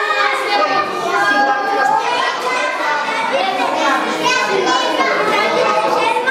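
Many children's voices chattering and calling out over one another, steady throughout, in a large hall with a hard floor.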